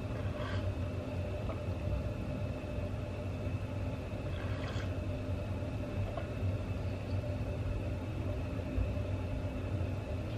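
A steady low hum with no speech, and faint sips from a mug of tea about half a second and about five seconds in.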